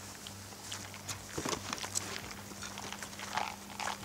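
Footsteps and rustling of someone walking through dry grass and weeds: irregular short crunches and brushing sounds, over a faint steady low hum.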